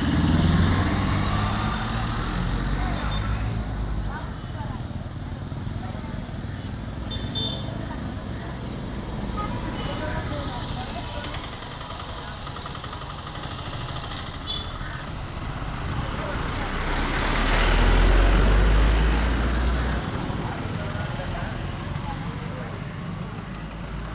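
Road traffic: a continuous rumble of engines and tyres, with one vehicle passing louder about three-quarters of the way through.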